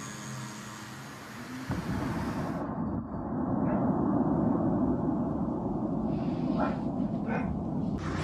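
A dense, steady low rumble on amateur phone footage of a night drone strike, starting suddenly about two seconds in. Faint voices come through near the end.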